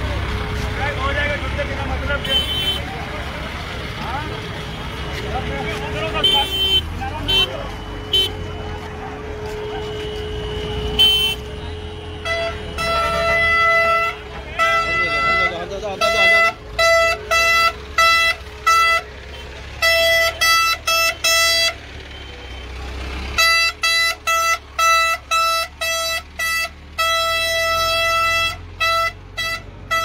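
Voices of a crowd, then from about twelve seconds in a vehicle horn honking again and again in short toots of uneven length, with a few brief gaps.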